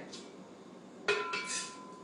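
Glass bowl clinks against the metal jar of an all-metal Osterizer commercial blender about a second in. The clink rings briefly as whole flaxseed is tipped in.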